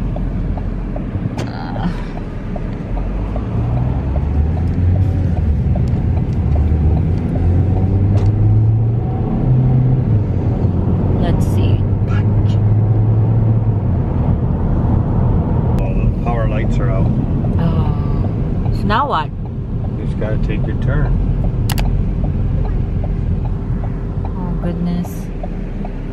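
Car engine and road noise heard from inside the cabin as the car pulls away and gathers speed, the low drone climbing in pitch in steps as it accelerates, then running steadily. A voice is heard briefly near the end.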